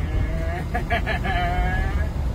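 Steady low rumble of a truck's engine and road noise heard inside the cab while driving, with a person's high voice sounding in the middle.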